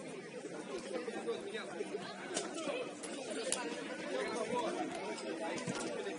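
Indistinct chatter of several voices across an open pitch, with two sharp knocks about a second apart near the middle.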